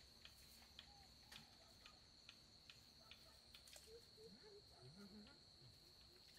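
Near silence with faint insects: a steady high-pitched trill and regular ticks about twice a second, with a few soft chirps in the second half.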